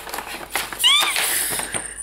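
Wrapping paper rustling as a gift is unwrapped, with a short, high-pitched vocal squeal rising and falling just before a second in, the loudest sound.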